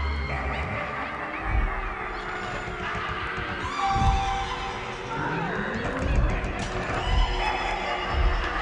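Halloween sound-effects recording: music mixed with crowd shouting, gliding cries and other effects, with low thuds every second or two.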